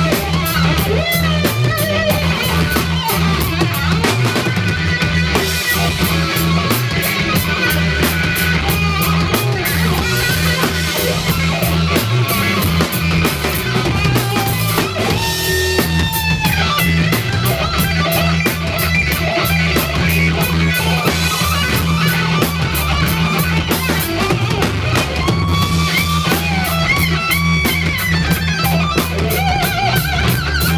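Three-piece blues-rock band playing live and loud: an electric guitar plays a lead line with bends over electric bass and a drum kit. There is no singing.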